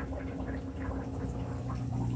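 Small Aqueon hang-on-back aquarium filter running, water trickling and gurgling from its spillway into the tank, over a steady low hum.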